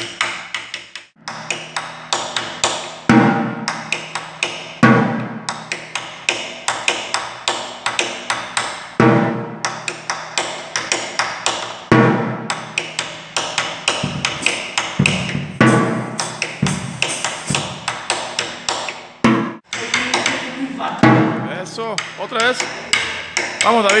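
Drumsticks playing a cumbia tambora pattern on a drum laid on its side: quick clicking strokes on the rim and shell, broken by deeper strokes on the drumhead every second or two. The playing stops briefly about a second in and again near the end.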